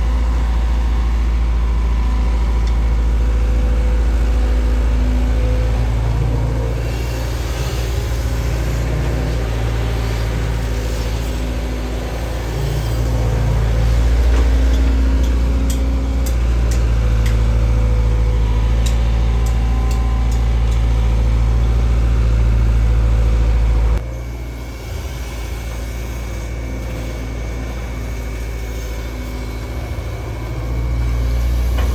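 Diesel engine of a Sumitomo SH long-reach excavator running steadily under working load, its note swelling and easing as the boom works, with a few sharp clicks partway through. About three-quarters of the way in, the sound becomes suddenly quieter and more distant.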